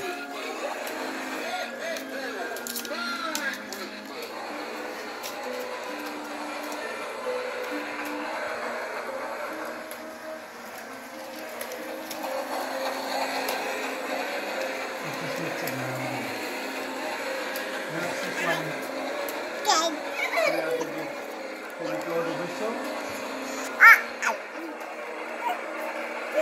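Battery-operated toy Christmas train running on its track, its built-in speaker playing an electronic melody in short stepped notes. Near the end there are a few brief voice sounds.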